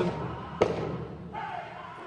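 Powwow drum group heard faintly in a large arena: one deep drum thump just over half a second in, then faint wavering singing over crowd murmur.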